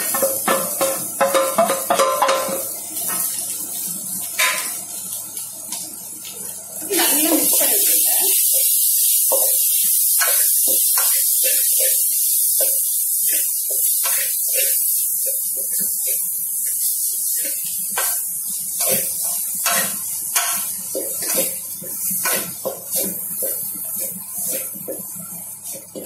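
Crumbled shark meat and onions sizzling in oil in an aluminium pot, louder from about seven seconds in. A wooden spatula scrapes and knocks against the pot again and again as the mixture is stirred.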